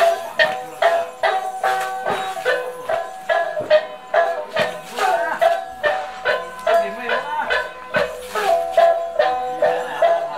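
Lisu folk dance music played live for a circle dance: a short melody of held, stepping notes repeated over a steady pulse of about two strokes a second.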